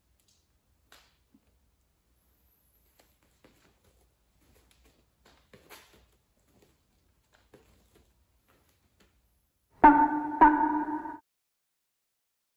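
A bell-like chime struck twice, about half a second apart, near the end, ringing briefly before it cuts off suddenly. Before it there are only faint rustles and light clicks of movement.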